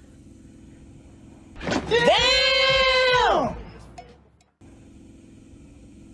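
A man's drawn-out, high-pitched vocal exclamation, held for about two seconds, gliding up at the start and falling away at the end.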